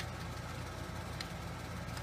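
A steady low background rumble, with a faint click a little after a second in.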